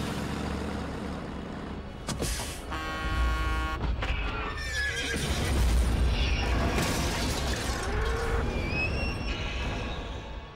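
Movie accident soundtrack: a truck's horn blares for about a second, then horses whinny and scream in panic several times over a deep rumble of the oncoming truck.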